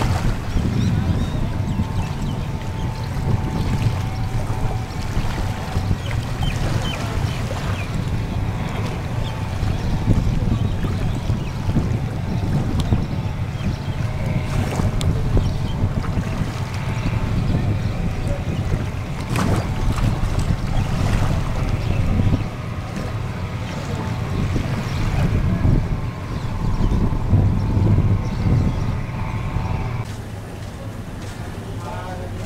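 Motor engine running steadily under load with a faint hum above it, and wind buffeting the microphone.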